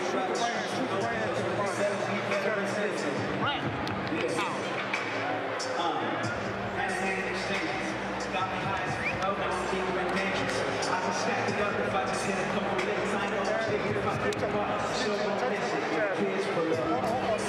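Arena crowd noise with indistinct voices talking nearby, steady throughout, with no single sound standing out.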